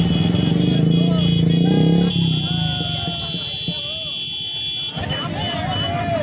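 Motorcycle engines idle close by, with a fast low pulsing and a steady high-pitched tone over them. The loudest engine noise cuts off about two seconds in, leaving voices and crowd chatter that grow busier near the end.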